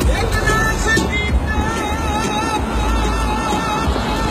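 A car driving on a highway, with a steady low rumble of road and engine noise. Music plays over it, with a long wavering held note from about a second and a half in.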